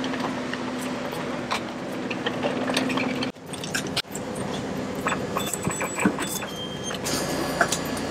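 City bus idling with a steady low hum while passengers board with suitcases, bags and wheels rattling and clicking. Then clatter inside the bus, with a short electronic beep at the ticket validator.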